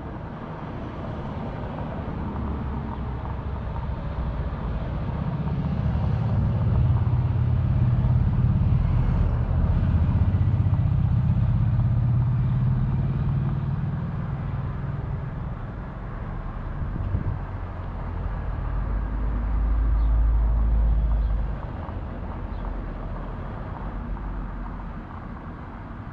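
Road traffic on the road alongside: a motor vehicle's engine swells and fades over several seconds, followed by a deep rumble near the end that cuts off suddenly.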